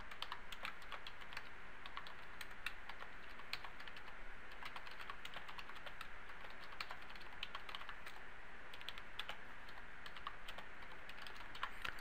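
Typing on a computer keyboard: a run of faint, unevenly spaced keystroke clicks over a low steady hiss.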